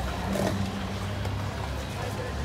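Street ambience at a busy marathon drinks station: a steady low rumble and hum with a few light clicks and knocks from runners' footsteps and paper cups.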